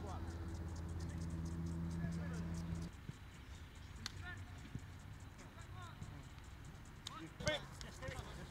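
A steady low mechanical hum that stops suddenly about three seconds in. It leaves a quieter open-air background with scattered distant shouts, then a short call and a sharp knock near the end.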